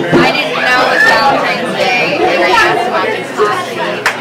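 People talking and chattering in a tavern room.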